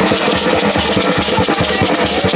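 Live drumming on a hand drum and a stick-beaten drum, playing a fast, steady beat, with a shaker rattling along.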